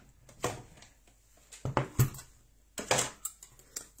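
A few light knocks and clacks of die-cutting gear being handled on a table: the cutting plates and metal die of a Big Shot die-cutting machine taken apart after a piece of paper has been cut. The knocks fall about half a second in, in a cluster near the middle, and again around three seconds in.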